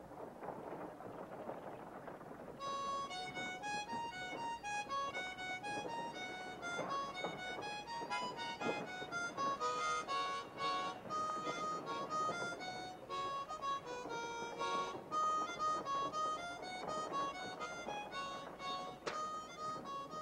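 Harmonica playing a tune in quick chords and runs of notes, starting about three seconds in, over a steady background noise.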